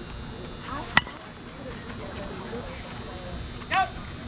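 A softball bat striking a pitched ball about a second in: one sharp crack, the loudest sound here. A player gives a short shout near the end.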